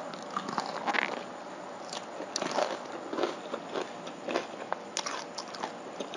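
A person biting and chewing crispy fried pork close to the microphone: irregular crunches and crackles as the crust breaks.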